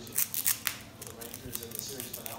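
Foil trading-card pack wrapper being torn open by hand, with a cluster of sharp crackles in the first second and lighter crinkling after.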